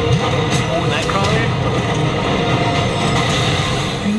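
Movie trailer sound effects: a loud, dense rumble of a train in motion during an action scene, with a couple of short rising screeches in the first second or so.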